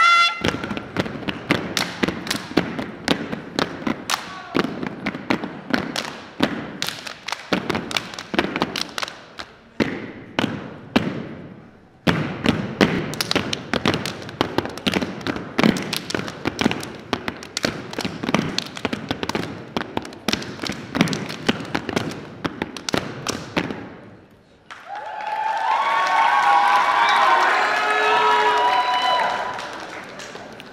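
Step team stepping: fast rhythmic stomps of many feet on a hardwood gym floor mixed with hand claps and body slaps, breaking off briefly about halfway and stopping a few seconds before the end. A burst of many voices shouting follows near the end.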